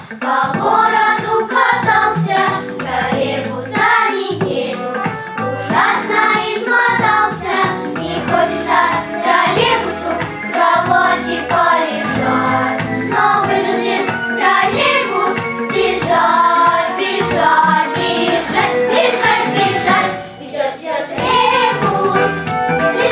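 A children's vocal ensemble of girls singing a song together over an instrumental backing track.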